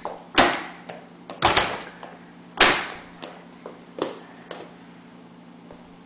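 A paperback book slammed against a childproof doorknob cover and the door: three loud smacks about a second apart, the middle one a quick double hit, then a few lighter knocks. It is a toddler using the book as a hammer to beat the knob cover.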